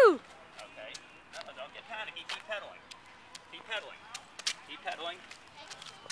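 A loud voiced call cuts off right at the start, then faint voices come and go with scattered sharp clicks and taps.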